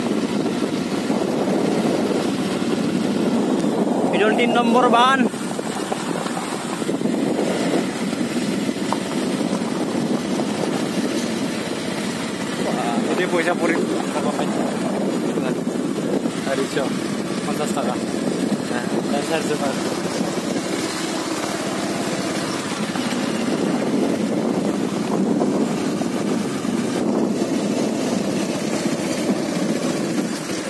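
Motorcycle engine running at a steady pace while riding along a rough gravel road, a continuous drone without breaks.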